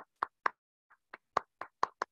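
Hand clapping over a video call, about four claps a second, each clap short with silence between them.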